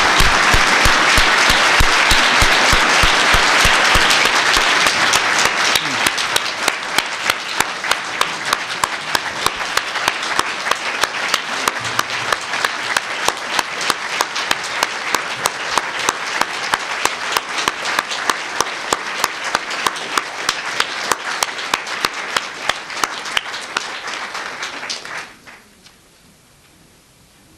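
Large audience applauding loudly. After a few seconds the clapping falls into a steady rhythm in unison, about three claps a second, and then stops suddenly near the end.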